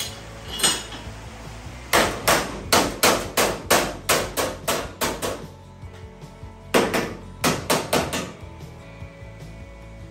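Hammer blows on the sheet-steel rear body of a car shell: a single blow, then a quick run of about a dozen strikes, three or four a second, and after a short pause a second run of about six.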